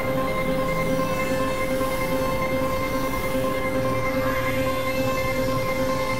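Experimental synthesizer drone: a steady held tone with overtones over a dense, rumbling noise bed, at a constant level.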